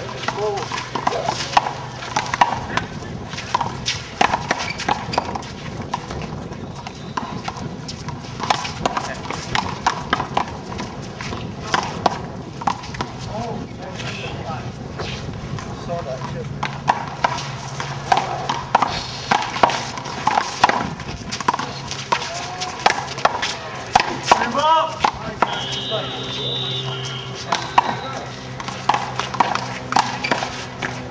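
One-wall handball rally: a rubber ball repeatedly smacked by hand and rebounding off the concrete wall and ground, giving a run of sharp slaps, with players' voices and shoe scuffs.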